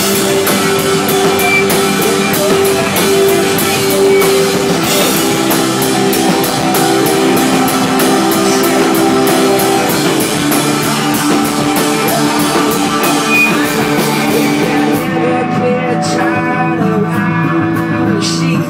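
A live rock band plays an instrumental passage: electric guitar over a drum kit, with cymbals struck steadily. About fifteen seconds in the cymbal wash drops out, leaving sustained guitar and a few scattered drum hits.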